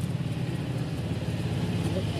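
Steady low hum of a motor vehicle engine idling.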